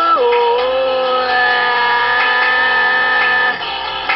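A singing voice drops in pitch and then holds one long, steady sung note for about three and a half seconds before breaking off, in a comic rock song.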